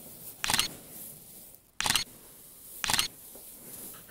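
Camera shutter sound effect clicking three times, a little over a second apart, as pictures are taken.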